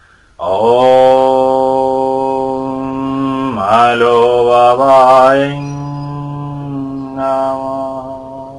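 A man chanting a mantra in a long held note, the pitch dipping and wavering through the middle, then a shorter phrase near the end.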